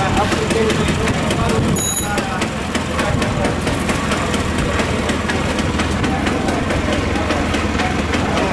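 A vehicle engine idling steadily under the voices of a crowd talking, with a short high beep about two seconds in.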